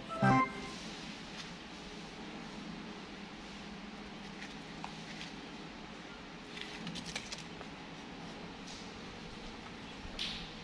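A short burst of music fades out just after the start. Then quiet room tone with a few faint crinkles of plastic snack and card packets being handled, clustered around the middle.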